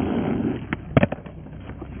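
Inline skate wheels rolling on concrete, then a few sharp clacks about a second in, the loudest near one second, as the skates hit the top of a high concrete ledge.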